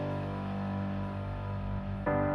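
Background music: one sustained chord held steadily, fading slightly.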